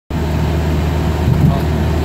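Steady low drone of a car's engine and road noise, heard inside the cabin while cruising at around 2,000 rpm.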